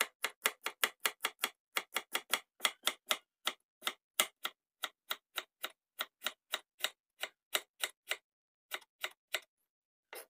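Kitchen knife chopping green papaya on a cutting board: a quick, even run of strokes, about three or four a second, that stops shortly before the end.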